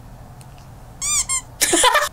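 A woman's voice: two short, very high-pitched squeals about a second in, then a loud scream near the end.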